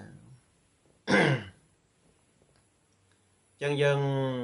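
A man clearing his throat once, a short harsh burst about a second in, then a pause before his speech resumes near the end.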